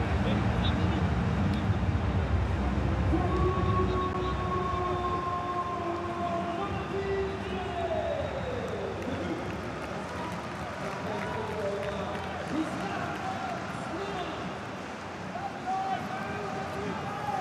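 Men shouting and calling out across an empty football stadium, with some long drawn-out calls and one falling shout about eight seconds in; the shouts carry in the empty stands. Heavier low noise fills the first few seconds.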